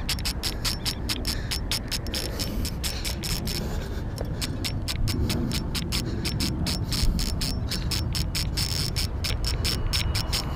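Spinning or casting reel drag clicking rapidly and continuously as a large ray strips line off against the drag. The angler fears being spooled and takes the fish for a big bat ray.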